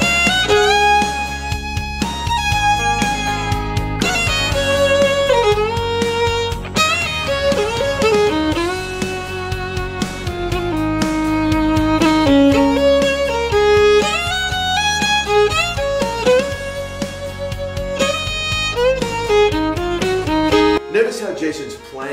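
Fiddle playing a country melody, with slides between notes, over a band backing track with guitar. The music stops suddenly about a second before the end.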